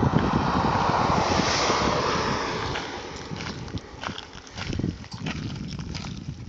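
Wind buffeting a phone's microphone, with a broad rushing noise that swells in the first couple of seconds and fades away by about halfway, and a few faint clicks.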